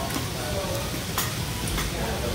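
Steady restaurant din of background chatter and clatter. Two sharp clicks a little over a second in and again about half a second later, typical of metal serving tongs knocking on steel buffet pans.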